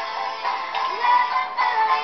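A recorded song playing, with a sung melody over the backing music.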